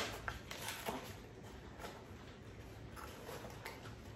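Faint scattered clicks and light handling noise as a boxed set of four small seasoning jars is opened and the jars are handled, a few small knocks in the first two seconds and one more near the end.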